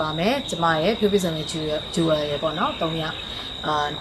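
A woman talking, with a steady high-pitched insect drone, like crickets, running behind her voice.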